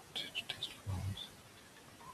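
Faint, half-whispered muttering from a man, with one short voiced sound about a second in, then low room tone.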